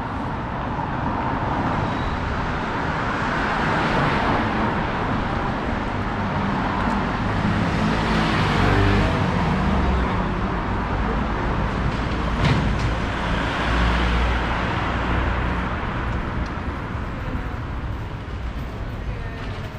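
Street traffic: motor vehicles passing one after another, the sound swelling and fading several times, with an engine loudest about halfway through. A single sharp click comes a little after the middle.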